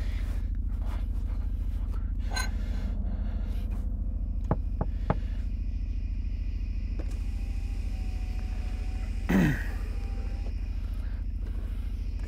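Steady low rumble of a car idling, heard from inside the cabin, with three quick sharp knocks about four and a half to five seconds in and one brief louder sound, falling in pitch, about nine and a half seconds in.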